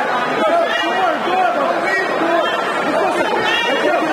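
Fight crowd shouting and calling out, many voices overlapping at once.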